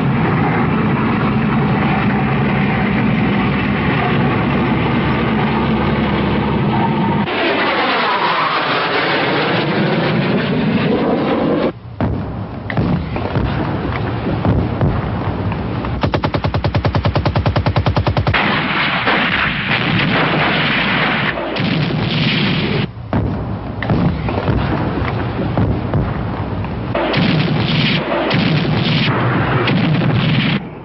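Battlefield sound of armoured vehicles and gunfire. An armoured vehicle's engine runs steadily at first, then a sweeping rise and fall in pitch passes by. About halfway through comes a two-second burst of rapid machine-gun fire, followed by scattered gun and artillery reports.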